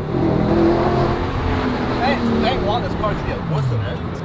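Audi R8's 4.2-litre V8 engine heard from inside the cabin, pulling under acceleration, with the revs falling near the end.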